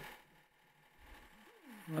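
Quiet room tone between a man's spoken words, with his voice starting again near the end.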